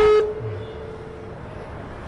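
A steady telephone line tone, one held note that fades out after about a second, heard as a phone-in caller's line drops; then faint room tone.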